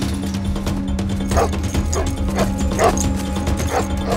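A dog barking repeatedly, about five sharp barks starting a second and a half in, over a low, sustained film score.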